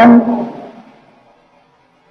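A man's voice holding the last vowel of a word, then its echo fading away over about a second into near silence.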